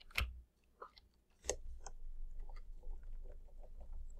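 A few separate sharp clicks, then from about halfway a quick run of faint ticks and scratches: a stylus dabbing and dragging across a drawing tablet as short grass strokes are painted with a digital brush.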